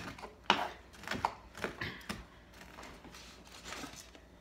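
A kitchen knife chopping crisp cooked bacon on a wooden cutting board: a handful of irregular knocks of the blade on the board in the first two seconds or so, then quieter.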